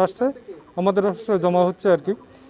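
A man speaking Bengali, pausing briefly near the start before talking again.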